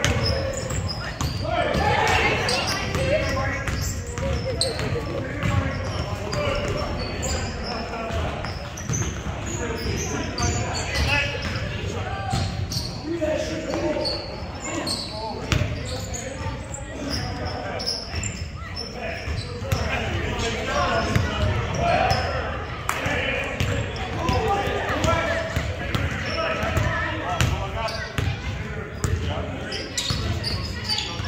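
Basketball being dribbled and bounced on a hardwood gym floor during play, with players' indistinct voices, all echoing in the large hall.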